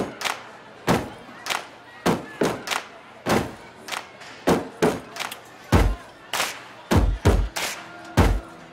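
A group beating out a rhythm on cafeteria tables, with hand slaps and claps at about two hits a second and some quick doubled hits. Deeper thuds join in about six seconds in.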